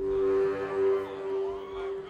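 An amplified instrument holding one steady note, with a few short sliding notes above it; it swells up at the start and again about a second in.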